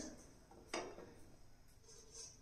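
Mostly quiet, with one short soft knock about three-quarters of a second in as a stuffed green chilli is set down in a non-stick frying pan.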